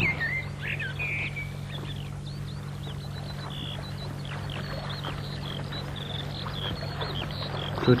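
Skylark singing: a continuous run of rapid high chirps and trills, over a steady low hum.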